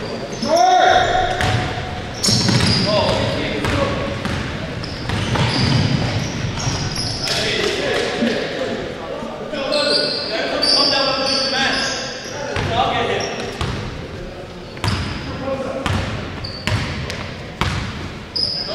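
Basketball game in a gym: the ball bouncing on the hardwood floor, sneakers squeaking, and players calling out, all echoing in the large hall.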